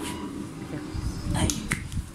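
Handling noise of a handheld phone being swung about: low bumping and rubbing on the microphone, with two sharp clicks about a second and a half in, under faint voices.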